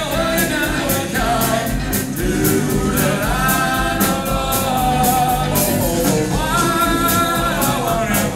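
A vocal harmony group of several male voices and a female voice singing live in close harmony, with held, swelling chords over electric guitar and a steady drum beat.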